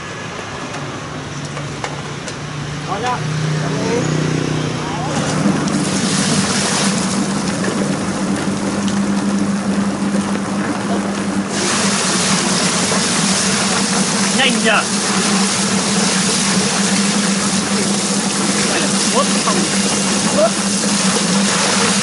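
Electric bird-plucking machine, a stainless drum with rubber plucking fingers, running as it plucks small birds: its motor hum rises in pitch over the first few seconds as it comes up to speed, then holds steady. A hiss of water spraying into the drum joins about five seconds in and grows louder near the middle.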